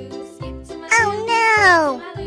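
Children's background music, with a loud drawn-out animal cry about halfway through: its pitch rises a little, then slides down over about a second.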